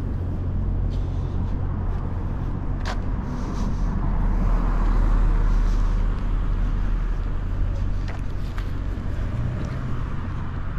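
Road traffic on a city street: a car passing, loudest about halfway through, over a steady low rumble. A single sharp click comes about three seconds in.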